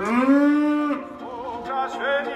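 A cow mooing once: one call that rises and then holds for about a second before stopping abruptly. Soft music starts after it.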